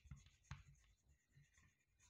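Chalk writing on a chalkboard: two faint taps in the first half second, then near silence.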